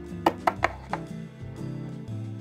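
Background music, with four sharp taps in the first second as a plastic toy pet figure is knocked against a small toy doghouse while being moved by hand.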